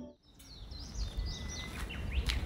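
Background music stops, and after a short gap outdoor ambience comes in: birds chirping repeatedly over a low steady rumble.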